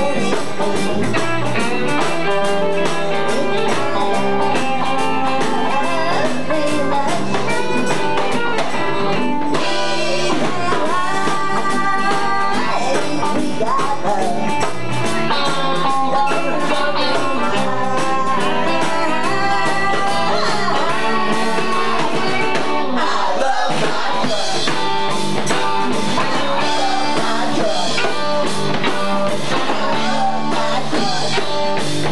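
Live band playing a rock song in a bar, with electric guitar and drums and a woman singing.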